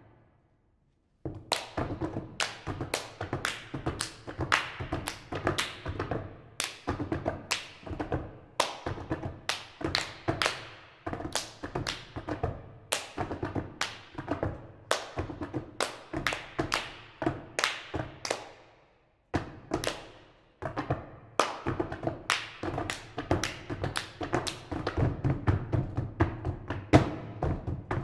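Bare hands tapping, slapping and striking a wooden tabletop in a fast interlocking rhythm, three players' hand percussion on a table. It starts after about a second of silence and pauses briefly about three quarters of the way through.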